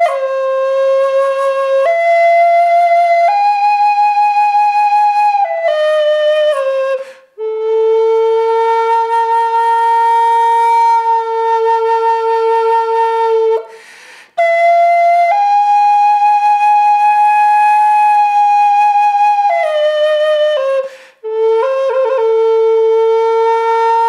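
Northern Spirit Native American-style flute of ABS plastic, blown hard, playing a slow line of long held notes that step between pitches, with brief pauses for breath about every seven seconds. Even overblown it holds its pitch range without jumping to a higher octave, though the pitch bends.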